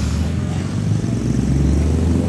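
Low, steady engine rumble of a motor vehicle running nearby, a little stronger in the second half.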